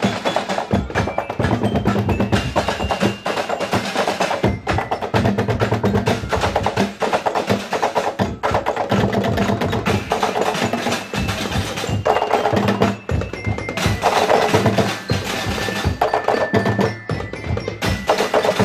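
Drumblek marching percussion band playing a continuous driving rhythm on plastic barrel drums and marching tom drums, with some ringing pitched strikes over the beat.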